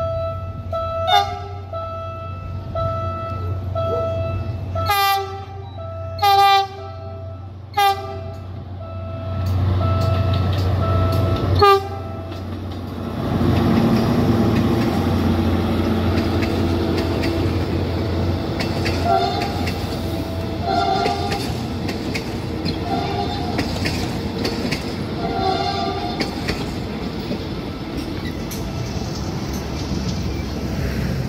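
A Philippine National Railways diesel locomotive sounds its horn in five short blasts as it approaches the crossing. From about thirteen seconds in, the locomotive and its coaches pass close by: a loud, steady rumble of engine and wheels on the rails, with a faint clacking from the wheels.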